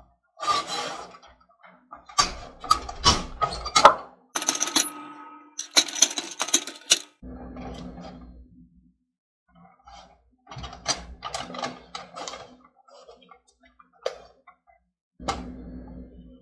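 Wooden stirring stick beating and scraping stiff amala dough against a non-stick metal pot, in runs of quick knocks and clacks with a lull of a couple of seconds in the middle.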